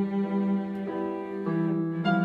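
A cello playing long, sustained bowed notes in a slow melody, changing note twice, with piano accompaniment from a digital keyboard underneath.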